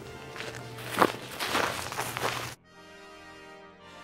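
A hiker's footsteps on dry pine needles and grass, coming close and passing, about six steps with the loudest about a second in. About two and a half seconds in they cut off suddenly, leaving background music alone.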